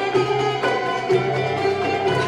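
Traditional Arabic ensemble music: plucked strings such as oud and qanun with violin, over a steady beat of about two accents a second.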